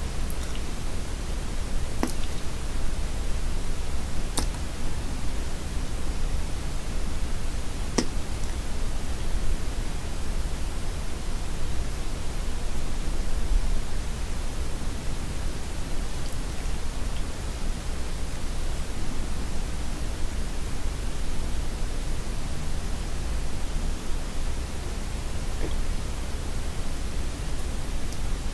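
Steady hiss from a sensitive microphone's noise, with a low hum underneath and a few faint soft clicks, about 2, 4 and 8 seconds in.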